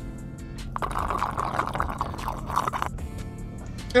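An iced drink sucked up through a straw for about two seconds, starting about a second in, over background music.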